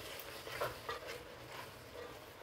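Wooden spatula stirring ground spices into a thick onion-tomato masala in an aluminium pot: faint stirring and scraping.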